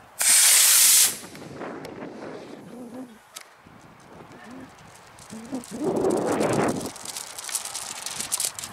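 Small black-powder model rocket motor, an A8-3 by the flyer's reckoning, firing at liftoff: a loud hiss that starts just after the opening and cuts off about a second later.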